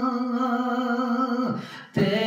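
A man singing a Punjabi kalam unaccompanied, holding one long sustained note. About one and a half seconds in the voice breaks off for a breath, then he comes back in on a slightly lower note at the end.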